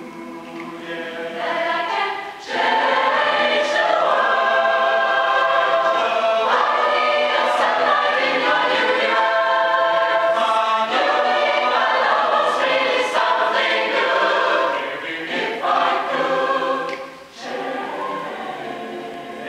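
Mixed choir of men and women singing in harmony, swelling to full voice about two and a half seconds in and holding it, with a brief drop near the end.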